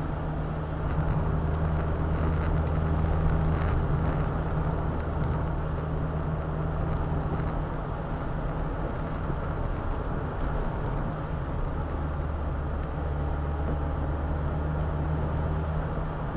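Roadster driving on an open road, heard from inside the cabin: a steady low engine hum over tyre and wind rush. The engine hum drops away for a few seconds in the middle, as if off the throttle, and returns towards the end.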